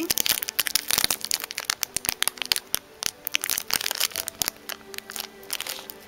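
Small clear plastic bag crinkling as it is handled, a quick run of crackles and clicks that is dense at first and thins out over the last couple of seconds.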